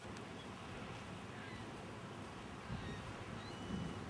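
Faint, steady outdoor background noise with a few short, faint bird calls.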